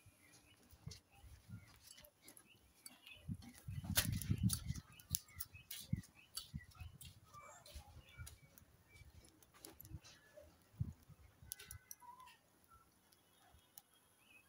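Palm kernels roasting dry in a metal pot over a wood fire: faint, scattered crackles and pops as the kernels begin to give up their oil. Birds chirp faintly, and a brief low rumble comes about four seconds in.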